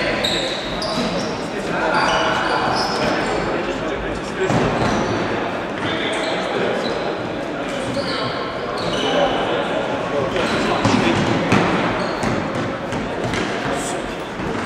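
Indoor floorball game in an echoing sports hall: players calling out, short high squeaks of shoes on the wooden floor, and occasional sharp clacks of stick on ball.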